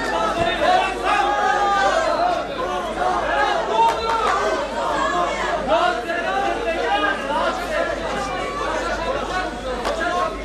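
Many overlapping voices talking and calling out at once, a steady babble of spectators around a cage fight, with no single voice standing out.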